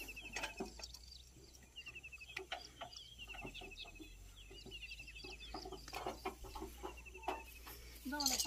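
Faint outdoor ambience with bird calls coming in quick runs of short repeated notes, and scattered sharp clicks and knocks.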